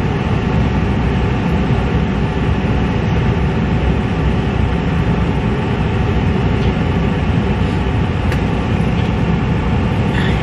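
Steady low rumble of a car's road and engine noise heard inside the cabin while driving, with one light click about eight seconds in.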